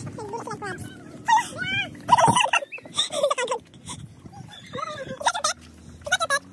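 A young child's high-pitched voice in several short calls and babble, without clear words.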